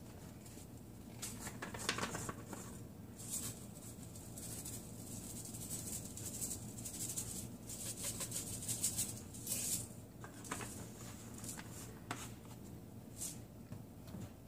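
Seasoning shaken from a plastic spice shaker onto cow skin in a pot: a series of irregular, light rattling shakes that come and go from about a second in until near the end.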